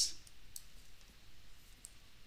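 Two faint clicks about a second and a quarter apart, over low background hiss, from someone working a computer while the on-screen page scrolls.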